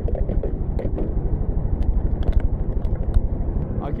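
A vehicle engine idling at the gas station: a steady low rumble with a rapid, even pulse, with a few light clicks over it.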